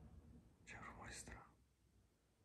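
A faint whisper, under a second long, beginning about two-thirds of a second in.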